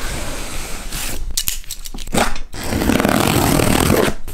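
Hands scraping and picking at plastic packing tape on a cardboard shipping box: a few sharp clicks in the first half, then a louder, steady rustling scrape over the cardboard in the second half.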